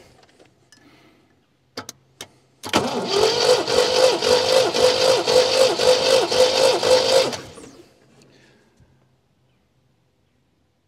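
Starter motor cranking a 1979 MGB's 1.8-litre four-cylinder engine on a jump pack for about four and a half seconds, after two clicks. The starter's pitch dips about twice a second as each cylinder comes up on compression during a compression test with the throttle closed.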